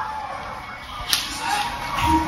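A single sharp, whip-like crack about a second in.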